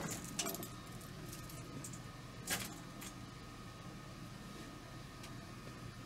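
Faint clinks and rustles of cables being handled, with one brief, sharper rustle about two and a half seconds in, over a steady low background hum.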